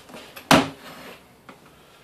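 A sharp click about half a second in, with a couple of fainter ticks, as a screwdriver pries a solid rubber tire's bead over the edge of a wheelchair wheel rim.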